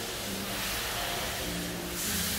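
Hands sliding and rubbing over the padded vinyl top of a massage table, a steady swishing friction sound, with soft background music underneath.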